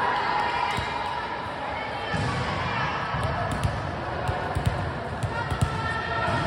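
Volleyballs bouncing on a gym floor: short, irregular thuds from about two seconds in, echoing in a large hall, with players' chatter underneath.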